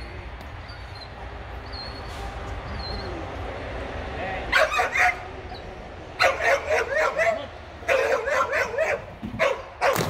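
A dog barking and yipping excitedly in quick volleys, starting about four and a half seconds in, ending with a splash as it lands in the pool right at the end.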